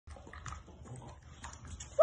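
A bulldog eating from a raised feeding bowl: faint chewing with a few scattered clicks.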